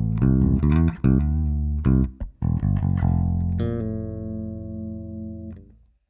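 Ibanez ATK810 electric bass played fingerstyle with its mid EQ turned all the way up: a quick run of notes, then one low note held for about two seconds that dies away just before the end.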